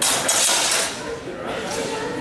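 Steel longsword blades clashing and scraping together in a sparring bout, a bright metallic burst that fills about the first second, with voices in the background.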